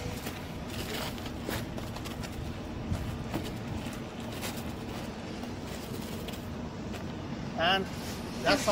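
Wheel chocks being pulled out from under a semi-trailer's tandem wheels on gravel: a few faint knocks and scrapes over a steady background rumble. A man's voice comes in briefly near the end.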